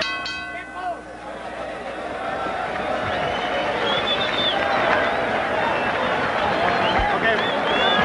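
Boxing ring bell struck once at the start, its ringing tone fading within about a second, marking the end of the round. Then the arena crowd cheers and shouts, with high whistles, growing louder.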